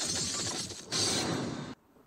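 A sound effect of a demon's head shattering into fragments under a sword cut: a loud shattering burst, then a second burst about a second in, which cuts off abruptly shortly before the end.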